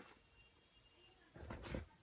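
Near silence with room tone, broken about a second and a half in by a brief rustle of sneakers being handled and lifted out of their box.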